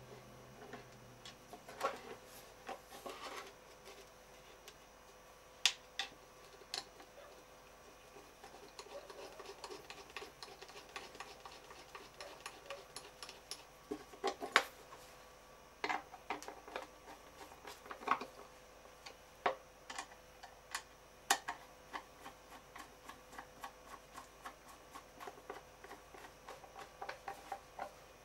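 Irregular light clicks and taps of metal parts being handled as a grinder's angle-setting fixture is adjusted and its screws are worked, with a few sharper knocks among them.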